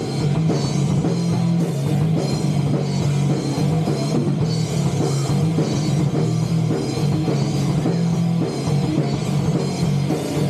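Rock band playing live: drum kit, bass guitar and electric guitar in a steady, loud instrumental passage without vocals.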